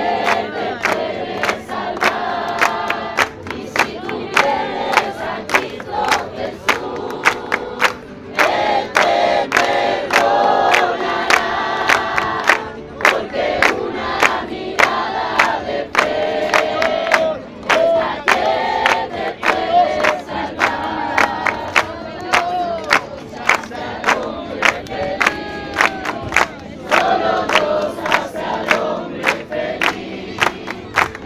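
A church congregation singing together, men's and women's voices, with hand-clapping on a steady beat throughout.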